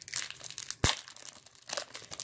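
Foil trading-card pack wrapper being torn open and crinkled by hand: a run of fine crackles, with one sharp click a little under a second in.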